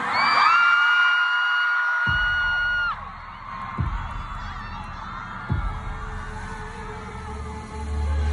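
Concert playback over an arena PA at a song transition. A high held tone rises, holds and cuts off about three seconds in, then deep bass thumps come slowly, about one every second and a half to two seconds, over a low background.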